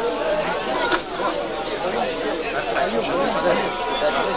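Several people talking over one another in casual conversation.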